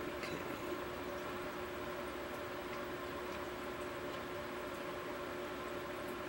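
Steady low background hum with a few faint steady tones in it, and a faint click at the very start.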